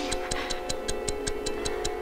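A clock ticking fast and evenly, about five ticks a second, over a sustained held musical drone in an old film soundtrack.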